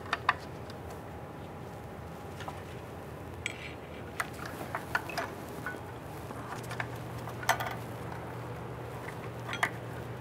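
Scattered small metallic clicks and clinks of a steel coil spring and needle-nose pliers against drum-in-hat parking brake shoes and their adjuster, as the spring is hooked into place. The sharpest clicks come just after the start, about three quarters of the way through, and near the end.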